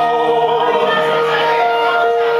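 A man singing through a handheld microphone over musical accompaniment, holding one long note.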